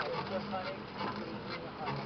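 Faint voices of the boat crew calling out in the distance, with a few sharp knocks near the start, about a second in and near the end.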